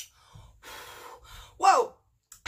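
A woman breathing out a lungful of bong smoke in a long, breathy exhale, ending about a second and a half in with a short voiced sigh that falls in pitch.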